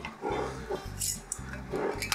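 A dog panting over the steady low hum of room fans, while the screw lid of a glass mason jar is twisted off.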